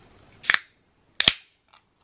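Ring-pull of an aluminium can of Monster Energy Ultra being cracked open, heard as two sharp cracks about three-quarters of a second apart.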